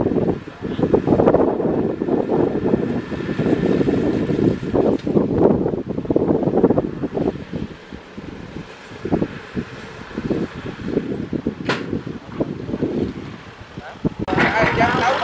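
Kubota tractor's diesel engine running as it pulls a small tractor-driven round baler through rice straw. The sound is rough and uneven, rising and falling, and eases off for a few seconds past the middle.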